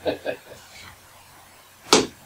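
A brief chuckle, then quiet room tone broken by a single sharp knock just before the end.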